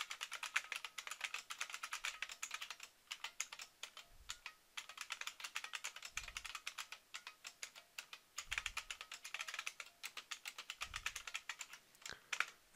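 Fast typing on a computer keyboard: quick runs of keystroke clicks with a couple of short pauses.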